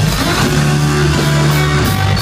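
Live rock band playing loud, heard from the audience: electric guitar and bass hold sustained chords, shifting to a new chord about half a second in.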